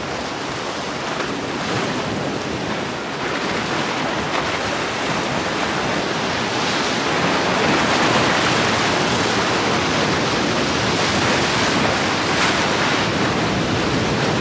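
Surf and fast, rough inlet water washing against rocks: a steady rushing noise that grows a little louder about six seconds in.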